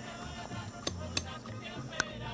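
A machete striking a hard, round nut shell: two sharp knocks a little under a second apart about a second in, and a third at the end, over steady background music.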